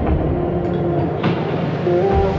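Background music: an instrumental stretch of a pop song, with held notes over a low rumble.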